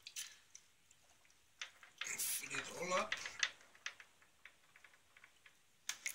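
Distilled water poured from a plastic bottle into a small plastic water tank: faint splashing and scattered drips. A voice is heard briefly about two seconds in.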